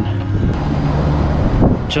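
Road traffic passing, a steady low hum, with background music underneath.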